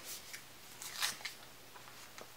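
Faint crinkling and scratching of a plastic squeeze pouch being handled, with its plastic screw cap being twisted on. The sounds come in short scattered bits, a few together about a second in.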